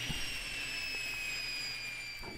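Grizzly G1023 cabinet table saw spinning down: a faint whine slowly falling in pitch over a steady hiss.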